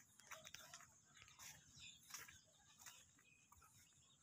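Near silence with a few faint, brief sounds scattered through it, among them distant animal calls.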